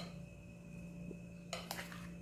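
A metal spoon clicking faintly a few times against a glass bowl as cream filling is scooped out, about one and a half seconds in, over a steady low hum.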